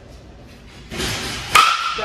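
2022 DeMarini Zoa two-piece composite USSSA bat striking a pitched baseball about one and a half seconds in: a sharp crack with a short ringing tone after it. It is solid contact, about 100 mph off the bat, called "perfect". A brief rushing noise comes just before the hit.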